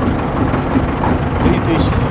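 The engine of an old septic-pumping tanker truck idling with a steady low rumble.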